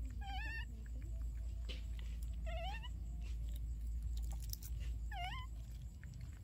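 Baby macaque giving three short, wavering, high-pitched coo calls, about two and a half seconds apart.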